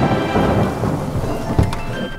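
Cartoon thunderstorm sound effect: rain with a thunder clap about one and a half seconds in, over background music.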